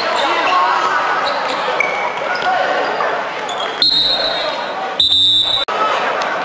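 Echoing sports-hall sound of a youth futsal game: players' voices and shouts, and the ball bouncing and being kicked on the hard court. A referee's whistle sounds twice, a short blast nearly four seconds in and a longer half-second blast about a second later, which cuts off abruptly.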